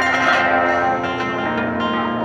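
Live band music with an acoustic guitar, holding steady notes.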